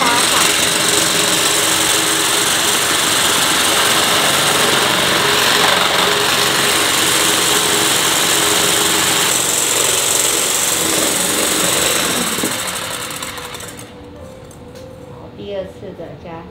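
Handheld electric whisk running in a stainless steel bowl, whipping egg whites to a foam. It runs steadily for about twelve seconds, then drops away near the end.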